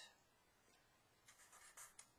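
Faint strokes of a fine-point Sharpie marker on paper: a few short strokes in the second half as a summation sign is written.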